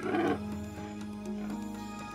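A donkey's brief call in the first moment, over steady background music.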